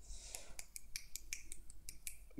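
A quick run of light, sharp clicks, about five a second, over a faint low hum.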